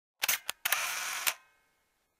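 Camera shutter sound effect: a few quick clicks, then a half-second whirr of film advance that ends in another click and fades out.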